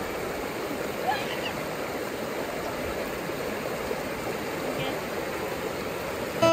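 Shallow river water running over rocks and small rapids: a steady rushing.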